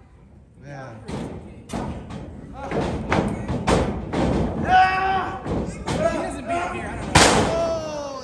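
Pro wrestlers' strikes and bodies hitting a wrestling ring: a run of sharp thuds and slaps, the loudest one about seven seconds in, likely a body slammed onto the ring mat, with voices shouting in between.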